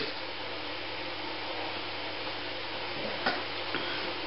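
Steady background hiss with a low, even hum underneath: room tone, with a faint tick about three seconds in.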